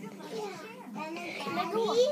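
Children's voices talking, with no clear words.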